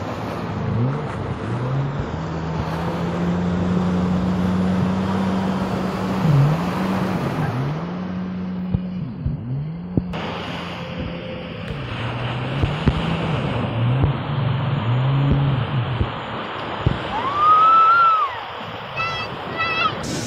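Jet ski engine running, its pitch dipping and coming back up several times as the throttle changes, over surf and wind noise. Near the end the engine drops away and a short rising-and-falling tone is heard.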